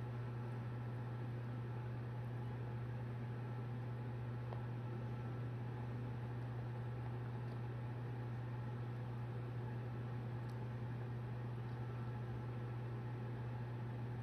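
A steady low hum with a faint hiss over it, unchanging throughout, with a few faint clicks now and then.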